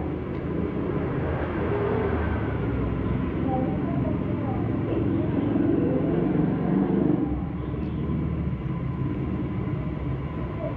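Indistinct voices over a steady low rumble of background noise.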